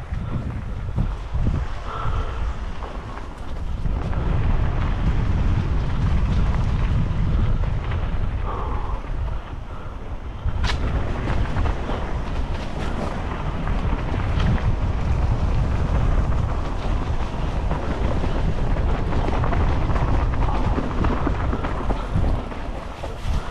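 Wind buffeting an action camera's microphone on a fast mountain-bike descent, a steady low rumble mixed with the tyres rolling over a dirt and leaf-litter trail. A few sharp clicks and knocks from the bike cut through, the loudest about ten seconds in.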